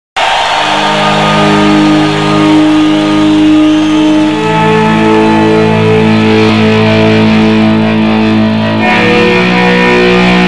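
Distorted electric guitar playing long sustained notes that overlap into held chords, the notes changing about four seconds in and again near nine seconds.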